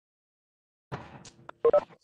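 Line noise on a video call, then a short, loud electronic tone like a telephone keypad beep.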